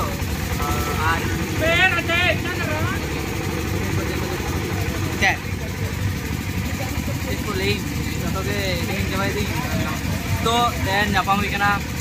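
Background voices over a steady low rumble like an idling engine, with a brief sharp sound about five seconds in.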